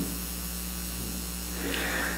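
Steady electrical mains hum, a low buzz, carried through the microphone and sound-system chain.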